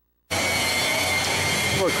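Vincent screw press dewatering citrus pulp, its VFD-driven drive running steadily: an even mechanical rush with a low hum and a thin high whine. The sound cuts in abruptly about a third of a second in.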